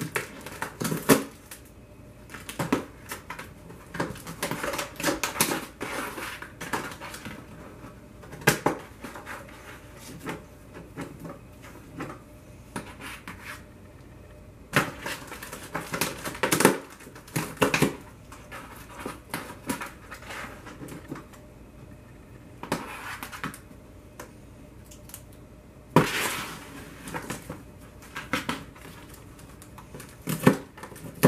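Cats clawing and biting at a taped cardboard box: irregular bursts of scratching and tapping on the cardboard, bunched into clusters with short quiet gaps between them.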